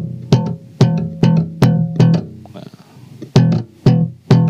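Electric bass played with the slap technique: about six percussive slapped and popped notes in the first two seconds, the low notes ringing out, then two more slaps near the end.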